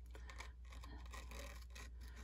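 Small scissors taking a few faint, short snips through designer paper while fussy-cutting around a heart shape, with the paper rustling softly as it is turned between cuts.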